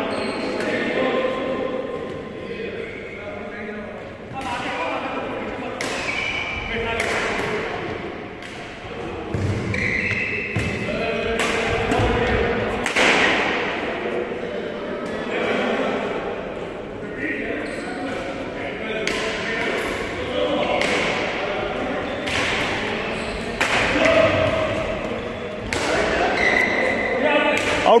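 Badminton rackets striking a shuttlecock during a doubles rally: a string of sharp hits at irregular intervals, roughly one every second, that ring out in a large hall.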